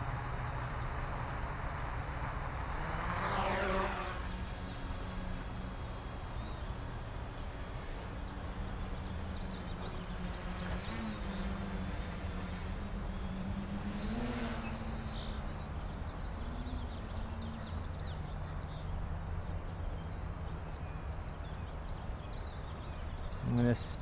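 Small electric quadcopter's motors and propellers buzzing as it takes off and flies, the pitch sweeping as the throttle changes, clearly at about three seconds in and again near fourteen seconds. A low rumble of wind on the microphone runs underneath.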